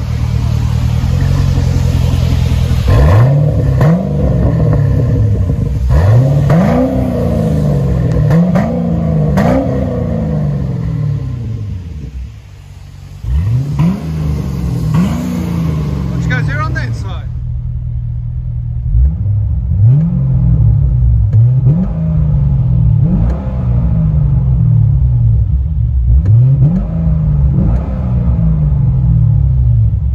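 2006 Chevrolet Corvette's 6.0-litre LS2 V8 through a dual exhaust with an H-pipe and Flowmaster Super 10 mufflers, idling and blipped about a dozen times, each rev rising sharply and falling back to idle. After a cut about halfway through, the revs are heard from inside the car.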